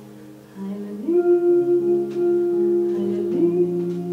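Female jazz vocalist singing long, held notes over guitar accompaniment. The singing gets louder about a second in, with one long sustained note before the pitch shifts.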